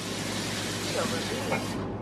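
Kitchen faucet running as water fills a mug: a steady rush that cuts off shortly before the end.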